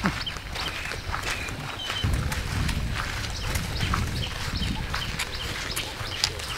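Footsteps of two people walking on a hard dirt path, with sandals slapping in irregular steps. Short high chirps and a low rumble through the middle sit under the steps.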